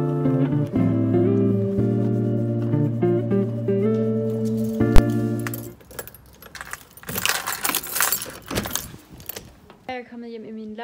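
Background music with sustained notes, cut by one sharp click about five seconds in, that stops about six seconds in. Then a few seconds of jangling and rattling from keys being handled.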